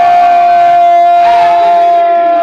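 A man singing one long, steady held note into a microphone during a devotional recitation, with a second, lower held note joining about a second in.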